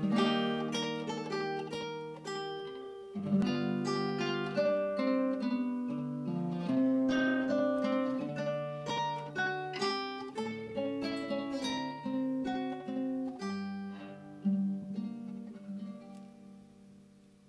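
Classical guitar playing a slow fingerpicked solo introduction to a Russian romance, single plucked notes and chords ringing and decaying one after another. The playing thins out and fades over the last couple of seconds.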